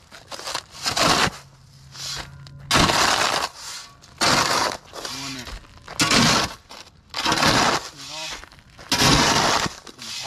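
Steel flat shovel scraping and scooping roof gravel off a built-up flat roof, super loud, in about six gritty strokes roughly a second and a half apart, with loose rock rattling as it is pushed and tossed.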